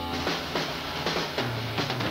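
Music in a radio broadcast: a held chord ends right at the start, then a drum kit plays separate hits about every half second.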